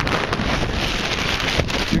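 Strong wind blowing across the microphone: a loud, steady rushing noise.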